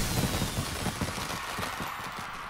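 Cartoon fireworks bursting and crackling in rapid succession, gradually fading away.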